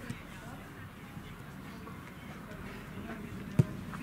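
Faint, distant shouting of players across a football pitch over a low outdoor rumble, with one sharp thump near the end.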